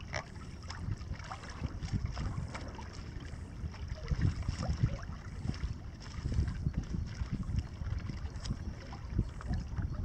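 Wind buffeting the microphone in irregular low gusts, with small water splashes and lapping on calm lake water.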